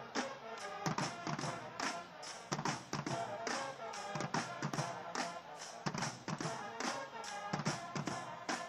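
High school marching band playing on the field: sustained horn chords over a steady drum beat with regular sharp hits.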